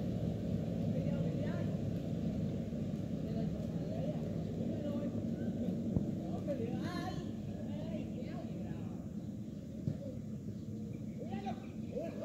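Distant voices of football players calling out across the pitch over a steady low rumble, with two short sharp knocks, one about halfway through and one near the end.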